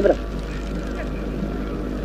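Steady low hum and hiss from an old film soundtrack in a pause between a woman's words, with the tail of one spoken word at the very start.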